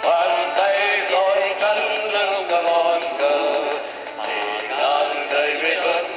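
A group of voices singing a song together to live accordion accompaniment.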